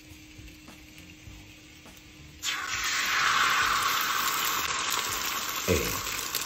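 Beaten egg hitting a hot oiled rectangular tamagoyaki pan: a loud sizzle starts suddenly about two and a half seconds in and carries on steadily as the egg sets.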